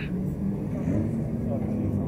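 A car engine running with a steady low drone, with people talking in the background.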